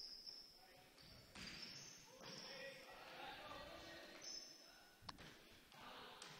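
Faint, distant court sounds of a volleyball rally in a large gym: short sneaker squeaks on the hardwood floor and a sharp hit of the ball about five seconds in, with faint calls from players.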